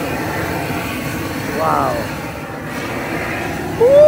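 Propane torch flame running with a steady rushing noise as it singes the hair off a wild hog carcass.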